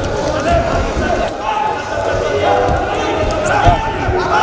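Shouting voices from around the wrestling mat during a bout, with two sharp slaps or thuds, about a second in and near the end, as the wrestlers grapple and go down to the mat.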